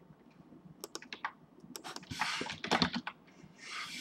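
Typing on a computer keyboard: a scatter of quick key clicks starting about a second in, with two stretches of soft hiss between them.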